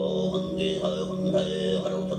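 Mongolian throat singing: a male voice holds one steady low drone while higher overtones shift above it.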